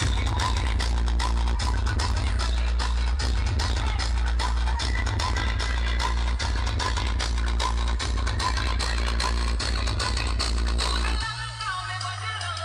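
Loud electronic dance music played over a DJ sound system, with heavy continuous bass and a fast, dense beat. It cuts in abruptly, and the heavy bass drops out about 11 seconds in.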